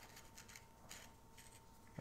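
Faint, scattered light clicks of a metal smartphone clamp and screw-on handle being handled.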